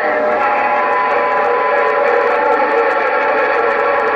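A loud, steady chord of several held tones comes over the President HR2510 CB radio's speaker, which is another station keying up and holding a tone on the channel. The pitch does not change.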